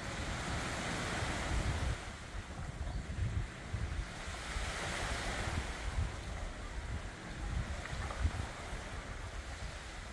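Seaside wind gusting on the microphone with a low rumble, over a wash of small waves on the beach that swells and eases in slow surges.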